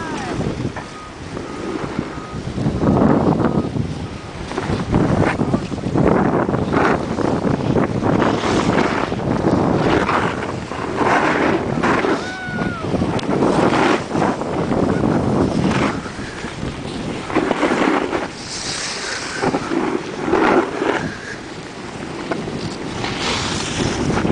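Wind buffeting the camera microphone in irregular gusts, a loud rushing noise that rises and falls every second or so.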